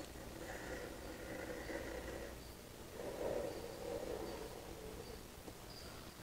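Faint, soft sounds of a plastic squeeze bottle being squeezed as liquid grout cleaner is dispensed from its nozzle tip along tile grout lines.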